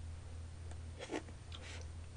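Chopsticks picking food from a plastic takeout tray: a few faint clicks and rubs, the most distinct about a second in, over a steady low electrical hum.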